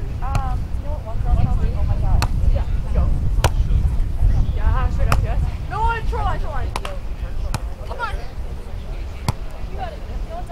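A volleyball being struck by players' hands and forearms during a beach volleyball rally: a series of sharp slaps, one every second or two, with short shouted calls from the players between the hits.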